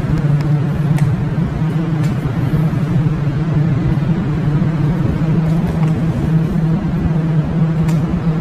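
A steady, loud low-pitched hum with a fainter tone above it over a rumbling noise, like running machinery.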